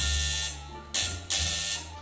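Apartment intercom buzzer ringing in separate buzzes: one stops about half a second in, then a short buzz and a slightly longer one follow about a second in.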